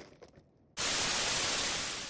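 A burst of static hiss, an even white-noise rush, that cuts in abruptly about a second in after near silence and fades slightly toward the end.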